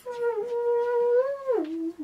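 A child's voice making a jet-flyby noise for a toy plane: one long held tone that drops in pitch about one and a half seconds in.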